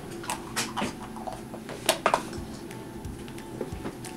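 A small pink plastic toy cup being handled, with a few light clicks and taps from its snap-on lid. The sharpest click comes about two seconds in. Faint background music plays under it.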